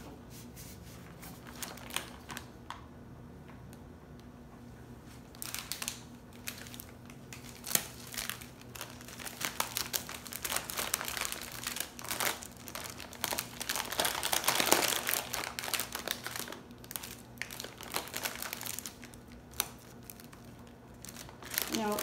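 Plastic candy packaging crinkling and rustling as it is handled and pushed into a plastic basket, with a few light knocks. It starts sparse, turns into a busy crinkling about a quarter of the way in, and is loudest a little past the middle.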